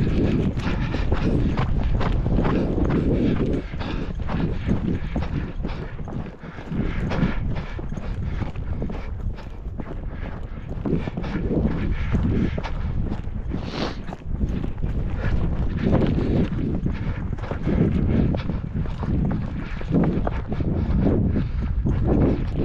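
Hooves of a three-year-old gelding at a walk on dry dirt and grass, a steady run of clip-clop footfalls, with wind buffeting the microphone.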